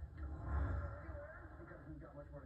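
Indistinct, muffled voices over a low rumble, with no clear words.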